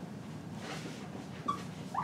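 Dry-erase marker writing on a whiteboard: faint scratching strokes, with a short high squeak of the marker tip about one and a half seconds in and another at the end.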